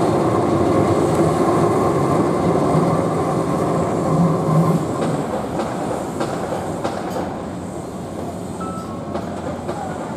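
Keihan Ishiyama-Sakamoto Line electric train running on street-level track, the sound growing quieter from about halfway through as the train moves away.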